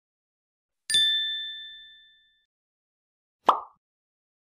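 Animated-intro sound effects: a bright chime-like ding about a second in that rings on and fades over more than a second, then a short pop near the end.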